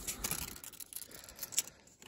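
Tape measure being drawn out and slid along a wooden bed slat: faint rubbing and scraping with a few light clicks.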